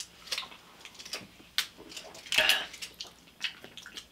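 A person sipping juice from a small prefilled plastic communion cup, with a few sharp clicks from the plastic being handled and a brief louder mouth sound a little over two seconds in.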